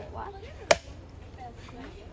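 A single sharp chop of a machete blade striking a young coconut, about two-thirds of a second in, hacking it open.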